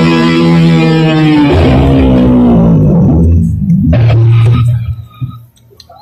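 Guitar-led music: a long held chord rings for about three seconds, a lower note follows, and the sound dies away near the end.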